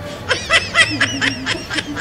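High-pitched snickering laughter, a quick run of short bursts about five a second that starts about a third of a second in.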